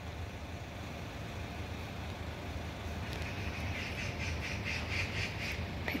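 A bird calling in a rapid run of repeated notes from about halfway in, over a steady low outdoor rumble.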